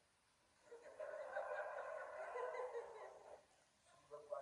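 Indistinct voices of several people in the room, lasting about two and a half seconds from just under a second in, with no clear words.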